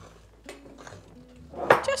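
Light taps and clinks of kitchenware while bread dough is mixed by hand in a glass mixing bowl, with one sharp clink about a second and a half in.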